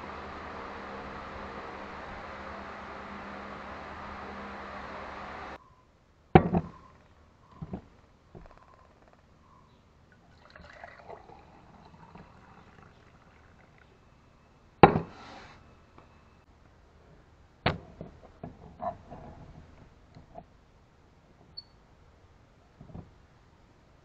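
A steady hum stops suddenly about a quarter of the way in. Then liquid is poured into a stainless steel insulated mug, between a few sharp knocks on the wooden bench.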